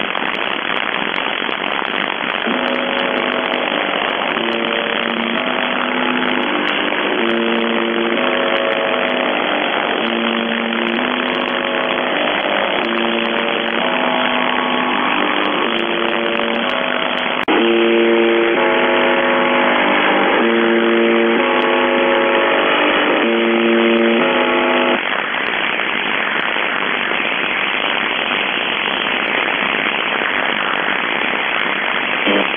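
Shortwave radio reception of the UVB-76 'Buzzer' station on 4625 kHz: loud, steady static hiss carrying a run of short, low buzzing tones about a second each with brief gaps, starting about two seconds in and stopping about 25 seconds in.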